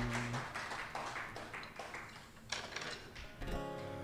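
Acoustic guitar played softly between songs: scattered light plucks and taps, then a chord about three and a half seconds in that rings on.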